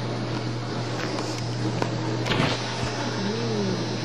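Steady low electrical hum with background hiss, broken by a single short knock a little over two seconds in and a brief soft vocal sound, rising then falling, near the end.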